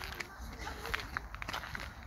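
Footsteps walking at an irregular pace, with faint voices in the background.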